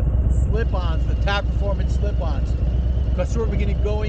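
2022 Harley-Davidson Low Rider ST's Milwaukee-Eight 117 V-twin running steadily while riding, with a steady low drone and wind noise.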